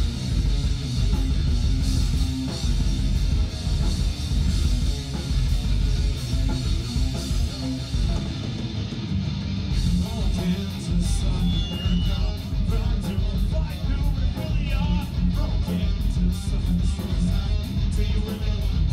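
Live rock band with electric guitars playing loud through a pub PA, with a heavy low end and a steady beat. The top end thins out briefly about eight seconds in before the band comes back in full.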